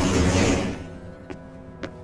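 Cartoon scene-transition sound effect: a loud whooshing swell mixed with music, fading out under a second in and leaving quiet music tones.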